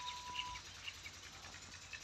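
Quiet farmyard background with faint, scattered bird chirps.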